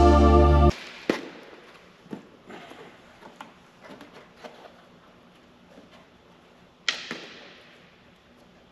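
Background music cuts off under a second in. Then come scattered light knocks and taps of parts being handled, and one sharper knock about seven seconds in that rings briefly.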